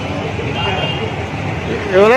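Outdoor street background noise with indistinct men's voices talking in the background.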